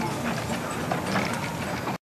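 Narrow-gauge steam locomotive and its open passenger carriages running past: a rhythmic clatter with a hiss of steam. The sound cuts off suddenly at the end.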